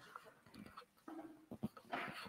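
Faint handling and movement noises: soft knocks and clicks from a handheld microphone being picked up and moved, mostly in the second half, with a brief faint voice-like sound about a second in.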